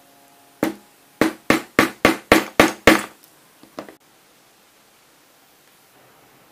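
Hammer striking a metal setting tool to set a rivet in leather: a single blow, then a quick run of eight blows, about four a second, then two lighter taps.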